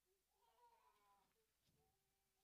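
Near silence: room tone, with a faint, wavering pitched sound lasting about a second, starting about half a second in.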